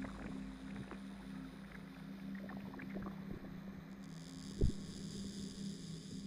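Quiet electronic music from a DJ mix: a steady low drone with scattered faint crackles and clicks. A high hiss-like layer comes in about four seconds in, with a single thump just after.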